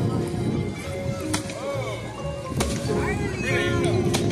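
A toy bat whacking a hanging piñata twice, about a second and a half apart, over children's voices and background music.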